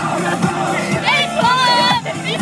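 Several girls shouting and singing loudly along to music playing inside a car, one voice held high and steady for about half a second near the end.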